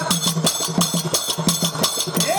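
Percussion accompaniment of a live Banjara bhajan playing a fast, steady beat: drum strokes, each with a bright metallic edge, with no voice over them.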